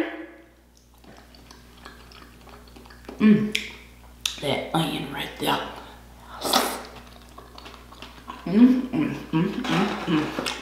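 A person's voice in short mumbled bursts while eating crab meat, with no clear words. There is a sharp click about six and a half seconds in.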